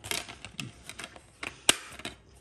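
A DVD being pressed back onto the centre hub of its plastic case: a string of light plastic clicks and rattles, the sharpest click near the end.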